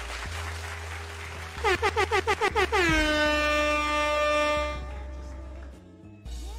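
DJ air-horn sound effect over low background music: a quick string of about eight short blasts about two seconds in, then one long blast that dips in pitch as it starts, holds, and fades out near the end.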